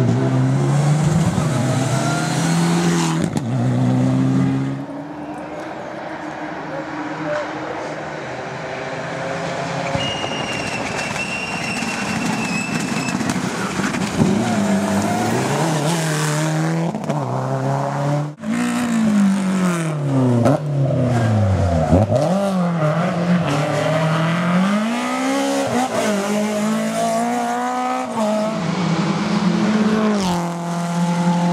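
Rally cars with turbocharged four-cylinder engines, among them a Mitsubishi Lancer Evolution X and a Subaru Impreza, driven hard one after another. The engine pitch rises and falls again and again as the drivers rev, brake and change gear. There is a short break about 18 seconds in.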